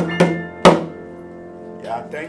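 Grand piano and hand drum ending a song: two final struck chords with drum strokes, the second loud, its piano notes left ringing and dying away. A voice starts near the end.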